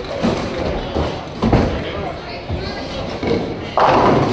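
Bowling alley ambience: overlapping background chatter with several separate thuds of bowling balls and pins, the loudest a sharp crash just before the end.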